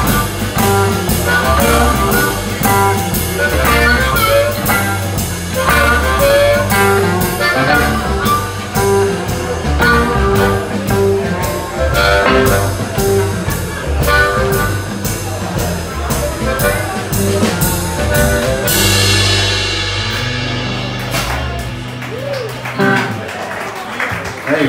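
Live blues band playing: electric guitar, bass guitar, harmonica and drum kit over a steady beat. About three-quarters of the way through the song ends on a cymbal crash that rings out over a held low note, which fades near the end.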